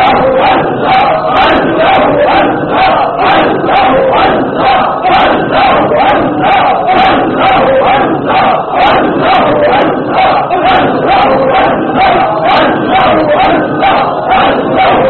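A crowd chanting 'Allah' in unison over and over in a loud, fast, steady rhythm: group dhikr (zikr).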